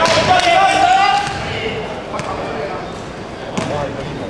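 Loud voices shouting for about the first second in a large, echoing sports hall, and a basketball bouncing on the court floor a few times, giving sharp thuds.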